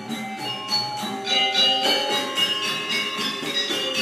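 Sasak gamelan ensemble playing: metallophones struck in a quick run of notes, with bell-like ringing tones, getting louder about a second in.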